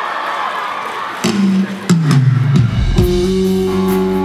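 A live band starting a song's intro. Guitar notes come in a little over a second in, then bass and drums join about halfway through and settle into steady sustained chords.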